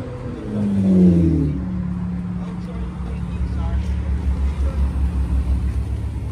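Car engine running on the street: a falling engine note about a second in, then a steady low hum with a pulsing rumble.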